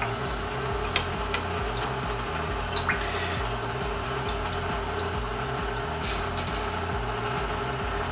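Steady trickling and bubbling of aquarium water circulating, with a few faint drip-like ticks about a second in and around three seconds.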